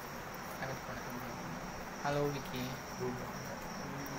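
A steady high-pitched chirring, like crickets, runs throughout. A short stretch of faint voice comes about two seconds in.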